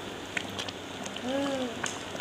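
Sambar simmering in a pan, bubbles popping now and then over a soft steady hiss. A short voiced hum from a person sounds about halfway through.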